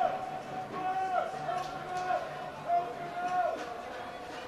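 Faint voices calling out across a football pitch during open play, held calls rising and falling, over a low background of field noise.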